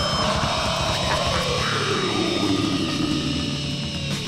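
Noisy grindcore passage: distorted guitar noise with pitches sliding slowly up and down over a dense, chaotic wall of sound, the deepest bass dropping out about one and a half seconds in.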